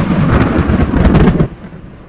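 A loud rumble of thunder used as a sound effect, which cuts off abruptly about one and a half seconds in.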